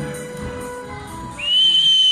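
Ballroom tango music playing and fading away, then about one and a half seconds in a long, loud, steady high-pitched whistle cuts in and holds.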